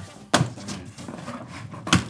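Two sharp knocks about a second and a half apart, with faint clattering between them.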